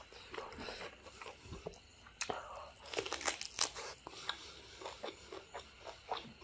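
Close-up eating sounds of a person chewing beef and rice by hand: mouth sounds broken by irregular sharp clicks, the loudest bunched a little past the middle.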